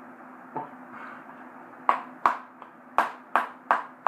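A tin of Copenhagen Wintergreen moist snuff being packed by tapping its lid with a finger (a top pack). After a softer tap or two, sharp taps begin about two seconds in and come about three a second.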